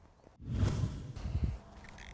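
Wind buffeting the microphone: a low rumbling gust that starts about half a second in and eases off after about a second, leaving a faint steady rush.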